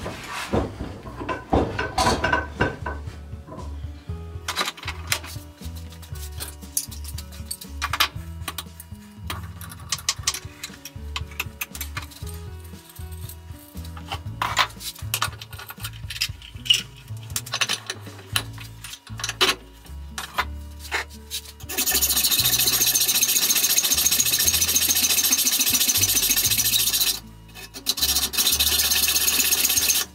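Hacksaw cutting through a metal bar clamped in a bench vise: a loud continuous rasp that starts about two-thirds of the way in and breaks off briefly near the end. Before it, scattered light metallic clicks and knocks as the bar is handled and set in the vise.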